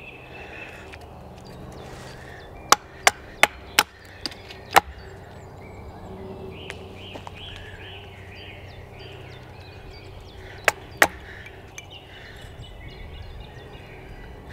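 Batoning: a wooden baton knocks on the spine of a knife to drive it into the edge of a sweet chestnut billet, splitting off the corners. Five sharp knocks in quick succession about three seconds in, then two more close together near the end.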